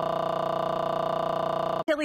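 A steady, buzzing held tone with many overtones, unchanging in pitch, that cuts off suddenly near the end as a woman starts speaking.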